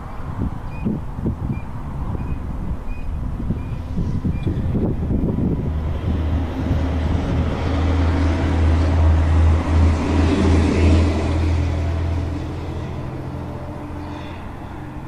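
A motor vehicle passing out of sight, its engine hum building from about halfway through, peaking near the ten-second mark and then fading, over gusty wind buffeting the microphone in the first half.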